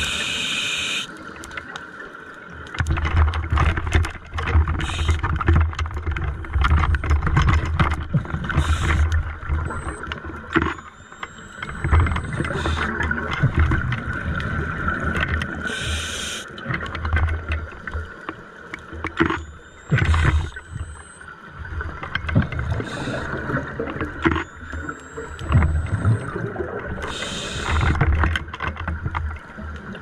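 Scuba regulator breathing heard underwater: a short hiss on each inhale every four to seven seconds, then long low rumbling stretches of exhaled bubbles.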